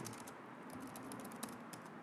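Computer keyboard typing: a quick run of faint key clicks as a word is typed in.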